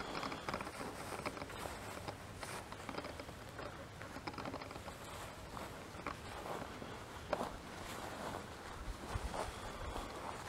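Footsteps on dry grass, an irregular rustling of steps and clothing, with one sharper tick about seven seconds in.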